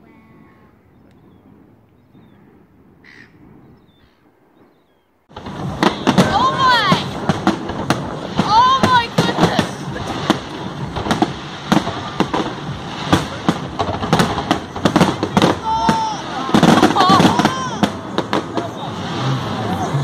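Fireworks display: after a quiet stretch, it starts abruptly about five seconds in with many sharp bangs and crackles from shells bursting overhead. Onlookers' voices rise and fall over it.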